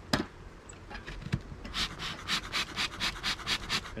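Stainless bee smoker handled on a wooden hive lid: a sharp knock just after the start, then its bellows pumped in a quick, even run of air puffs from about a second and a half in.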